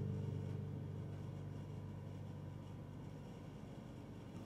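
The final chord of an acoustic guitar ringing out, its low notes fading slowly away.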